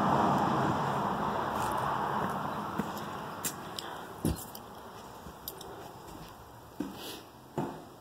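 Footsteps and handling knocks of a hand-held phone while walking from a porch through a doorway onto a wooden floor: a few scattered soft knocks, the loudest about four seconds in, over a low background noise that fades away during the first few seconds.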